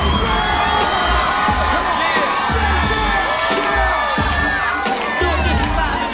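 A concert crowd cheering and screaming over music with a repeating heavy bass beat.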